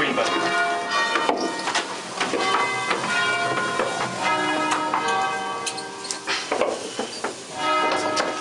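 Concerto of five rope-rung church bells tuned in E-flat, rung by ringers pulling the ropes. Many strikes follow in quick succession, each bell ringing on over the next.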